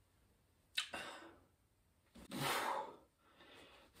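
Fabric rustling as a quarter-zip pullover is pulled on over the head: a short swish a little under a second in, then a longer, louder swish around two and a half seconds.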